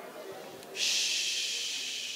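A long hissing breath sound into a handheld microphone, starting suddenly about a second in and fading away over about two seconds.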